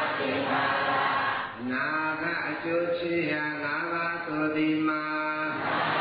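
Buddhist chanting: a group of voices reciting together, then from about two seconds in a single man's voice chanting alone in long held notes that step between pitches. The group comes back in near the end.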